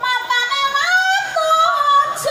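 A high solo voice singing a Banyumasan song for an ebeg performance, holding ornamented notes and sliding between them, with little instrumental accompaniment.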